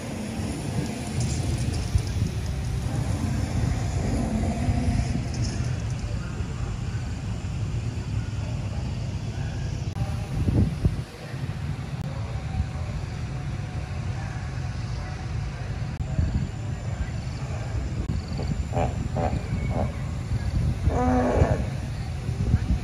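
Recorded dinosaur roars and growls played over outdoor loudspeakers, a deep, low sound. Brief voices come in near the end.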